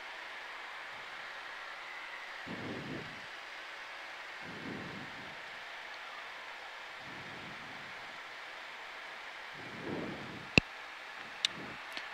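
Steady hiss of airflow and twin-turbofan engine noise inside the cabin of a Cessna CitationJet CJ1 on approach, with the engines throttled back. A few faint low muffled bumps come and go, and there are two sharp clicks near the end.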